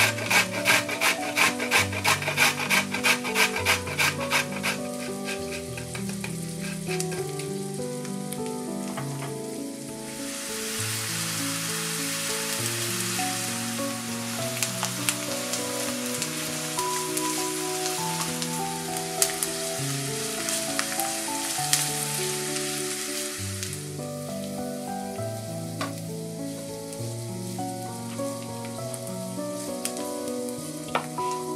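A carrot grated on the coarse side of a stainless steel box grater, in rapid rhythmic scraping strokes that stop about five seconds in. From about ten seconds in, grated carrot and diced onion sizzle steadily as they fry in oil in a pan, and the sizzle stops a few seconds before the end. Background music plays throughout.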